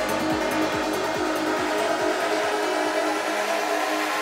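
Dark psytrance playing over a club sound system: a fast kick drum, a little over two beats a second, under sustained synth tones. The kick and bass drop out about three seconds in, leaving the held tones and a rising high sweep as a breakdown begins.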